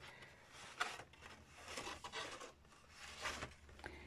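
Stitched paper envelope pockets being leafed through by hand: a few faint paper rustles and soft taps, the sharpest just before a second in.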